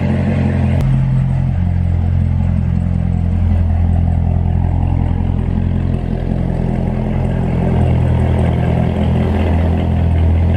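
2019 Corvette ZR1's supercharged V8 running steadily at low revs as the car creeps slowly, with a sharp click about a second in.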